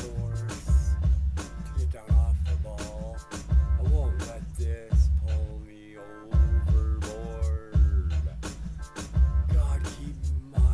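A pop-rock ballad: a sung lead vocal over a heavy, pulsing bass beat, with a short drop in the accompaniment about six seconds in.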